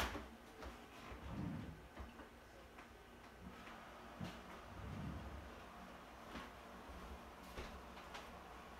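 Faint footsteps and soft knocks on a hardwood floor, with a sharp click at the very start and a few light ticks.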